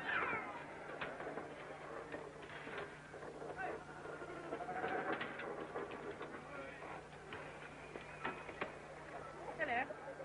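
Animals bleating now and then over a murmur of indistinct voices in a busy street, on an old film soundtrack.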